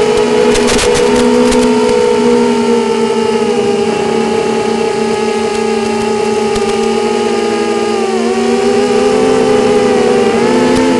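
Four brushless motors of a QAV250 quadcopter (Lumenier 2000 kv motors on Gemfan 5x3 props) whining together in flight, heard through the FPV video downlink's audio: several close pitches drift slightly with throttle and waver near the end. About half a second to a second and a half in, short bursts of crackle come in as the downlink signal briefly breaks up.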